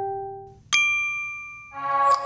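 Bell-like chime sound effects: one ding rings out and fades, a bright new ding strikes about 0.7 s in and rings, and a fuller chord of chime tones swells in near the end.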